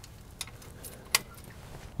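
A few light metallic clicks, the sharpest just past a second in, as the telescoping draft link of a compact tractor's three-point hitch is handled and adjusted by hand.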